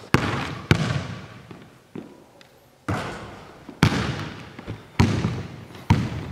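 A basketball dribbled on a hardwood gym floor: about seven bounces at uneven spacing, each ringing on in the big hall's echo.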